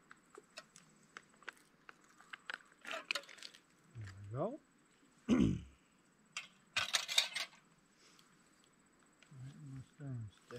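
Small clinks and taps of camp cookware as hot water is poured from a kettle and the kettle is set back on a gas camp stove. Two short wordless voice sounds come around the middle, and a brief scrape or rustle follows about seven seconds in.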